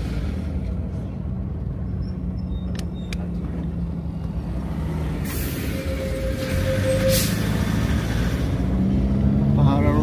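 Motorcycle engine running steadily under wind and road noise while riding along a highway. Around five to seven seconds in, an oncoming petrol tanker truck rushes past close by with a loud whoosh, and a brief voice is heard near the end.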